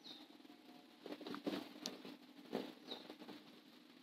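Near quiet, with a few faint, scattered small clicks and rustles over the middle of the pause.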